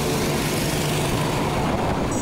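KTM RC 200 single-cylinder engine running steadily on the move, under a steady rush of wind on the helmet microphone.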